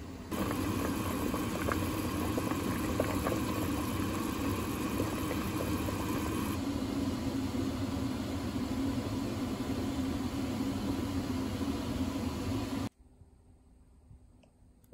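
A steady mechanical hum with a whirring noise, which stops suddenly near the end, leaving only a few faint clicks.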